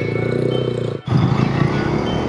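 Motorcycle engine running at low revs as the bike pulls away. The sound breaks off briefly about a second in, then carries on with the revs rising slightly.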